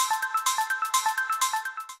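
A short musical sting: a quick, bright run of short, plucked-sounding high notes stepping up and down in pitch.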